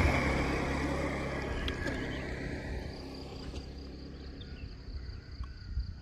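A motor vehicle's engine hum fading away steadily as it moves off, while a steady, high insect drone comes up in the second half.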